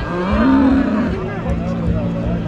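A fighting bull bellowing: a long low call that rises in pitch and falls again within the first second, then a second low call near the end.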